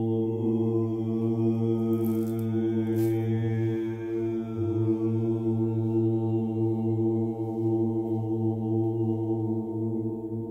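Low voices holding one steady note together in a sustained chant or hum, as in Sufi dhikr, the drone wavering slightly and briefly dipping about four seconds in.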